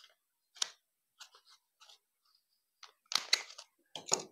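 Folded joss paper being handled: short crinkles and rustles with a sharp click about half a second in, and a louder burst of crackling paper near the end as the paper fan is pressed and spread open.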